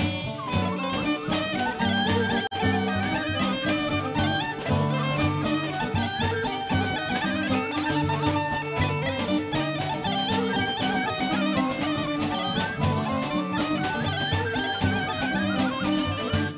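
Bulgarian folk band playing an instrumental passage: a fast, ornamented wind-instrument melody over tambura and a steady tapan drum beat.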